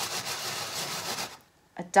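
A palm rubbing over dried, sandy mud on a metal baking tray to pick up fine dust, a steady rubbing that stops about a second and a half in.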